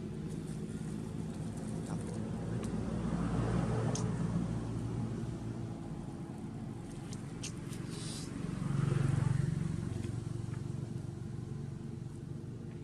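Motor vehicles running nearby: a steady low engine hum that swells twice, about three seconds in and again about nine seconds in, as vehicles pass.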